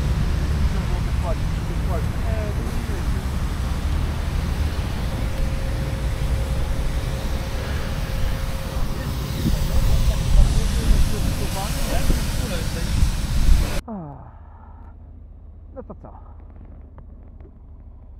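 Loud rushing, rumbling noise of wind buffeting the camera microphone, with faint voices underneath. About fourteen seconds in it cuts off abruptly to a much quieter stretch with a man speaking.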